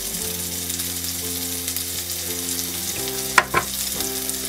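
A metal spoon spreading burger sauce over a bun half, under a steady hiss. Two sharp knocks come close together near the end.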